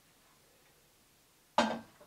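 A metal cooking pot set down in a kitchen sink, one sudden clank with a short ring, about a second and a half in, after quiet room tone.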